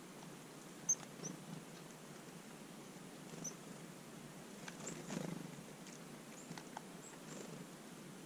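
Faint high, short chirps of small songbirds, about a dozen scattered calls with a quick downward flick, the loudest about a second in. Underneath is a low steady hiss, with a soft rustle swelling briefly about five seconds in.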